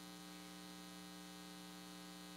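Faint, steady electrical mains hum: a low, constant drone with a few fixed tones and no other sound.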